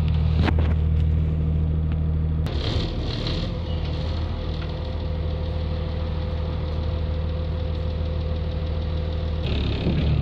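City bus engine heard from inside the passenger cabin, a steady low drone. About two and a half seconds in the deep hum drops back and breaks up, and a faint steady higher tone runs through the middle. The deep hum comes back strongly near the end.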